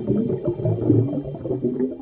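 Bubbling, gurgling water sound like air bubbles underwater, under the last faint synth tones; it begins dying away near the end.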